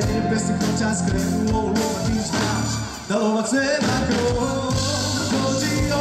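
A male vocalist singing live through a microphone with a band of keyboards and drums, with a brief break in the music about halfway through.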